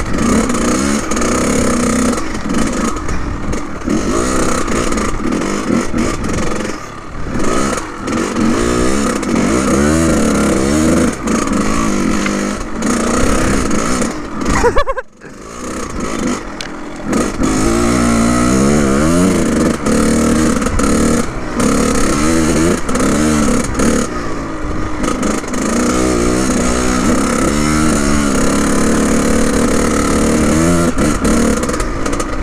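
Kawasaki KX100 two-stroke dirt bike engine being ridden hard, revving up and down with the throttle so its pitch keeps rising and falling. About halfway through the sound drops out suddenly for a moment, then the revving picks up again.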